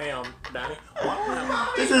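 A teenage boy laughing and chuckling, in short bursts with a brief lull in the middle.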